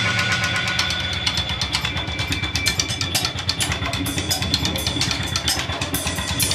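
A live rock band's amplified instruments holding a steady low drone with a fast, even pulsing flutter, after a loud drum-heavy passage breaks off at the start.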